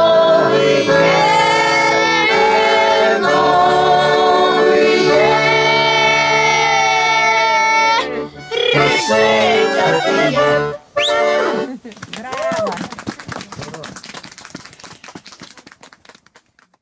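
A group of girls and women sing a folk song to a button accordion. The song ends about eight seconds in, followed by a few seconds of voices and then applause that dies away.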